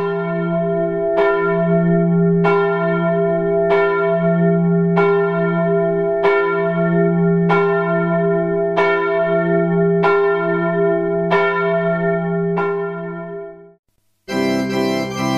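A single church bell tolling slowly and evenly, about one stroke every second and a quarter, each stroke ringing on into the next. The tolling fades and cuts off just before the end.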